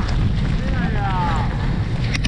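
Wind buffeting the microphone of a camera on a moving mountain bike, a steady low rumble, with a spectator's voice calling out, falling in pitch, about a second in.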